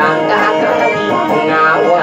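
A man singing a traditional Maguindanaon song into a microphone, accompanied by two plucked guitars.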